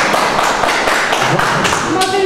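Audience in a meeting hall applauding: many hands clapping at once in a dense, steady burst that dies away near the end.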